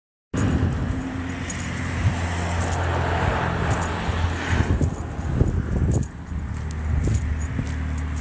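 A vehicle engine running steadily with a low hum, over rushing noise, with a few light clicks and crunches.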